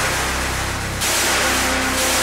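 A loud, hiss-like rushing noise, a dramatic sound-effect swell, laid over held tones of the background score. The noise dips briefly about a second in, then swells again.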